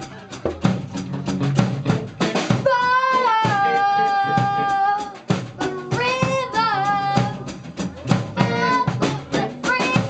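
A live rock band playing, with a child singing over a drum kit and electric guitars; the voice holds one long note for about two seconds near the middle, then sings shorter phrases.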